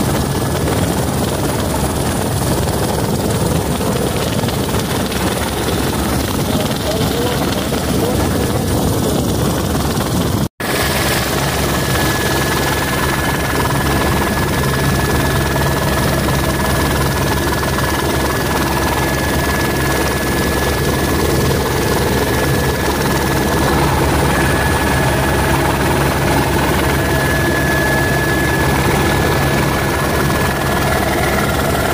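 Steady helicopter engine and rotor noise heard from aboard the aircraft, broken by an instant's dropout about ten seconds in. After it, a steady high whine runs over the low hum.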